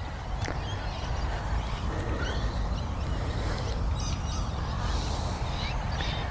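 Outdoor background ambience: a low steady rumble with faint, scattered bird calls.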